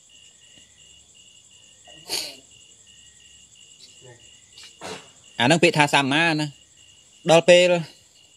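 Crickets chirping steadily in a fast, even pulse, with a man's voice speaking two short phrases over it in the second half.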